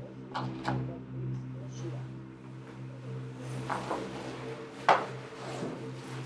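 Several sharp knocks and clatters, the loudest about five seconds in, over a steady low hum.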